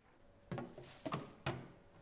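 Three sharp knocks and clatters about half a second apart, the middle one a short rattle, as of a metal bin being handled.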